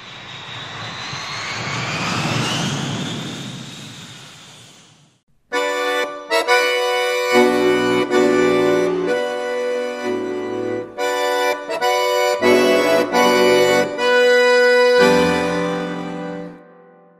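A whooshing sound effect swells and fades over the first five seconds. It is followed by accordion chords playing a short intro tune in clipped phrases with brief breaks, ending on a held chord.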